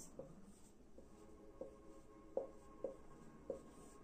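Marker pen writing on a whiteboard: a handful of short, faint strokes as letters are drawn.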